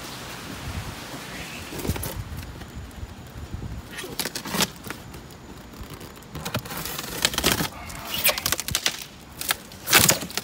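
Irregular scrapes, knocks and rustles of a styrofoam fish-shipping box being handled, with its lid pulled open near the end.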